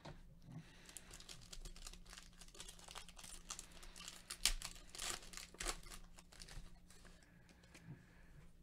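Foil wrapper of a Panini Select baseball card pack being torn open and crinkled: a run of faint crackles, with a few sharper rustles in the middle.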